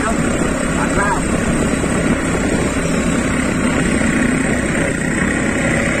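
Motorcycle engine of a bentor (motorcycle-pushed passenger rickshaw) running steadily while riding, mixed with steady road noise.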